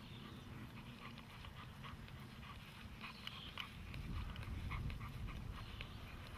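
Doberman panting in short, quick breaths while trotting at heel. A low rumble of wind on the microphone swells about four seconds in.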